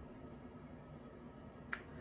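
Faint room tone with a single short, sharp click near the end.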